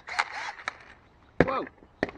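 A few sharp knocks or clacks, about half a second apart, the loudest about a second and a half in.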